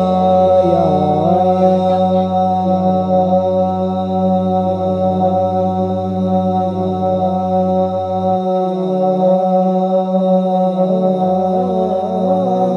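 A male naat reciter singing long, wavering drawn-out notes without clear words into a microphone, over a steady low drone. The lowest part of the drone stops about eight seconds in.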